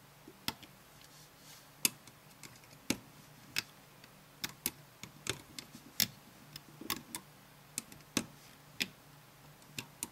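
Metal loom hook clicking and tapping against the clear plastic pins of a rubber-band loom as bands are hooked up over them: sharp, irregular clicks, about two a second.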